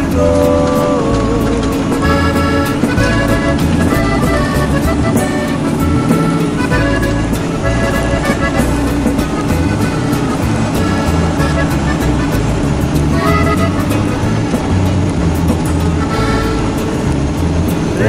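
Instrumental break of a norteño corrido: accordion melody over a steady bass and rhythm accompaniment, between sung verses.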